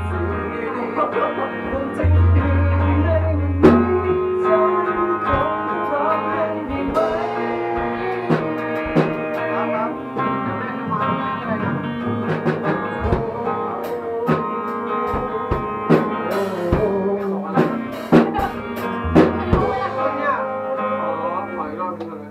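A rock band playing live in a small rehearsal room: electric guitar, bass guitar and drum kit, with drum hits punctuating sustained guitar chords and bass notes.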